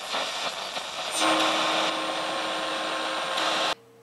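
Intro sound effect for a news title card: a loud rushing, static-like noise that starts abruptly, swells about a second in with a steady low hum tone under it, then cuts off suddenly just before the end.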